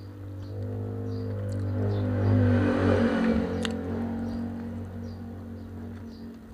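A motor vehicle's engine passing by, growing louder to a peak two to three seconds in and then fading away.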